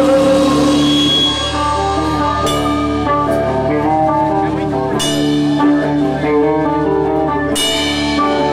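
A rock band playing live: held and changing guitar notes over a drum kit, with three sharp accents, the last near the end.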